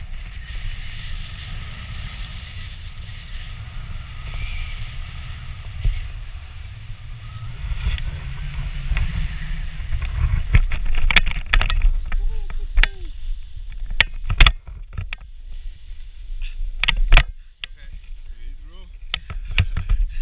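Wind buffeting the camera microphone as a tandem paraglider comes in low to land. From about halfway through, a run of knocks, clicks and rustles follows as the pair touch down and handle the harness and camera, with one loud thump near the end.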